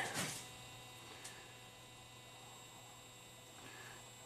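Quiet room tone with a steady low hum and a soft click about a second in.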